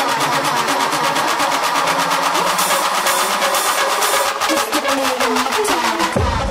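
Tech house track in a stripped-down stretch with little bass: rapid, even hi-hat ticks about eight a second over a dense buzzing synth, with a brighter hiss swelling in the middle.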